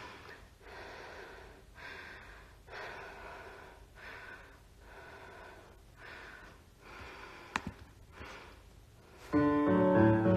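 A person breathing close to the microphone, slow in-and-out breaths about once a second, with one sharp tap a little after seven seconds. Near the end, recorded piano music for the next ballet exercise starts, much louder than the breathing.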